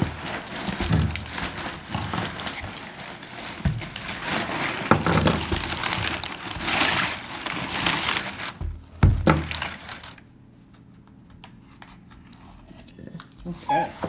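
Crumpled kraft packing paper crinkling and rustling as it is handled in an opened cardboard shipping box, with a couple of sharper knocks around the nine-second mark. The sound drops low for the last few seconds.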